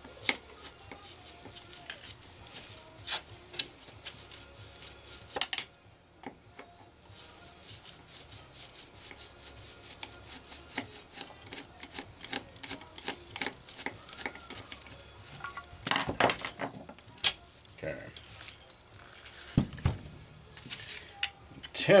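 Hand tools clinking and tapping on the metal and plastic parts of a chainsaw being taken apart: scattered light clicks throughout, with a denser run of louder clicks about sixteen seconds in.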